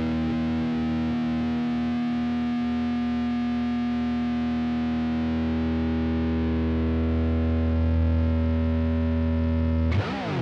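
Distorted electric guitar chord sustained through effects, held steady and ringing out as the song's final chord, swelling slightly about eight seconds in.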